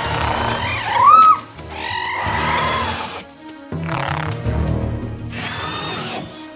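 Sound-designed Pyroraptor calls over background music: a loud rising-and-falling cry about a second in, a longer call around two to three seconds, and a third, higher call near the end. The raptor is calling its pack-mates for backup.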